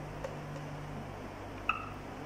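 Quiet pause: a guitar chord faintly dying away in the first second, then a soft click and a brief high chirp near the end.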